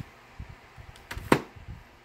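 A plastic VHS clamshell case handled and set down on a desk: one sharp knock just past halfway, with a few soft thumps around it.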